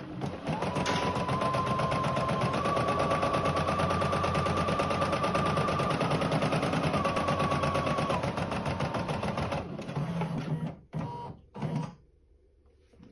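Rosew ES5 embroidery machine stitching out a design: rapid, even needle strokes with a steady motor whine that rises a step in pitch and later drops back. About ten seconds in the stitching breaks into a few short bursts, then stops just before the end.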